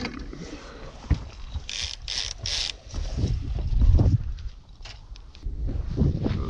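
Handling noise of gear on a fishing boat: rustling and scraping close to the microphone, with three short hissing scrapes in quick succession about two seconds in, over a low, uneven rumble.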